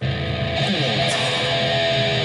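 A Cort X-6 VPR electric guitar played through its humbucker pickups with a heavy, brutal tone. A chord is struck right at the start and left ringing, and its pitch dips and rises about half a second in.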